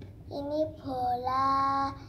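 A young girl singing in a sing-song voice: a short phrase, then a longer one that ends on a held note.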